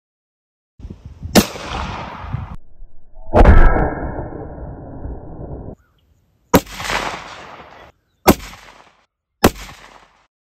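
Five .22 WMR pistol shots from a Walther WMP, fired one at a time into a ballistic gel block. Each is a sharp crack that trails off briefly. The first comes about a second and a half in, the second about three and a half seconds in, and three more come in the last three and a half seconds.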